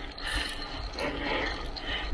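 Bicycle being ridden up a paved climb: light mechanical ticking and rattling from the drivetrain over a steady low rumble of tyres and wind.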